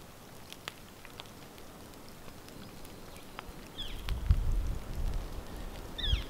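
Faint, sparse crackles and ticks from smoldering lightning-struck wood, then wind rumbling on the microphone from about four seconds in. A short high bird chirp comes twice in the second half.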